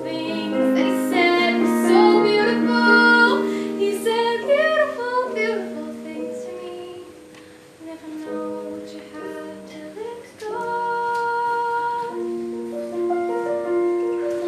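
A woman singing to live piano accompaniment. The voice wavers and glides through the first half, then drops out, and the piano carries on alone with held notes.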